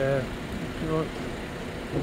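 Two short fragments of voice, one at the start and one about a second in, over a steady hum of city street and traffic noise.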